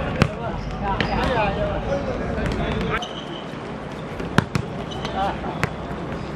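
A football being kicked and bouncing on a hard court: a few sharp thuds, the loudest about four and a half seconds in, with players calling out.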